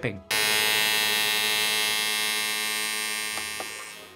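A steady electric buzz with many overtones, starting abruptly just after the last spoken word and slowly fading.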